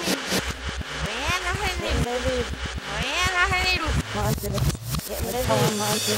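Human speech played backwards: voices running in reverse as garbled, speech-like babble with abrupt, clipped onsets.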